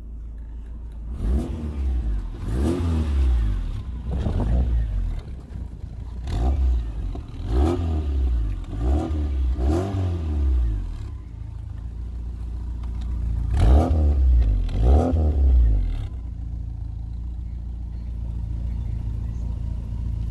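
Fiat Uno SCR's engine being revved in a string of short blips over a steady idle, then settling to an even idle for the last few seconds.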